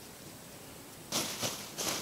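Thin plastic bag crinkling as it is handled, in two short bursts in the second half; before that only faint background.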